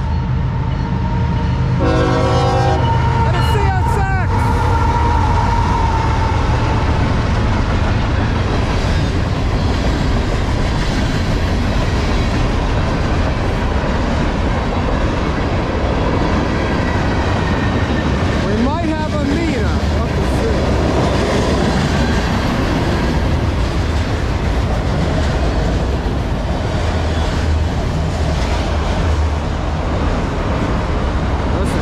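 A freight train sounding its horn briefly a few seconds in as it approaches a grade crossing, then rolling past with a continuous rumble of wheels on rail.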